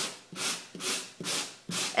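Sanding block rubbed in short back-and-forth strokes over embossed cardstock, about five scratchy strokes, roughly two and a half a second. The abrasive is wearing down the raised embossed areas to expose the card's lighter core colour.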